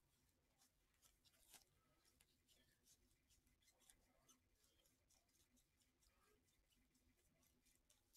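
Near silence: room tone, with a faint click about one and a half seconds in.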